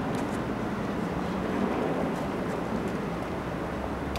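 Steady city street noise: an even hum of traffic.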